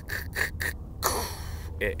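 A man's breathy laughter in short pulses, then about a second in a longer breathy vocal sound, gasp-like, that falls in pitch.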